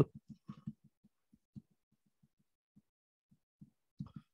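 Faint, irregular soft taps with near silence between them, thickest in the first second or so and again near the end: a stylus touching down on a drawing tablet while handwriting.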